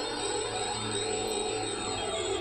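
Electronic music: sustained, layered synthesizer tones with faint sliding pitches through them.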